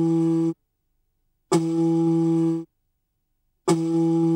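A large seashell blown as a horn (conch trumpet): three blasts on the same steady low note. A held note ends about half a second in, a second blast lasts about a second, and a third begins near the end, with silent gaps between.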